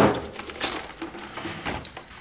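Plastic cling wrap crinkling and rustling as it is pulled off the roll and handled, with a sharp crackle about two-thirds of a second in.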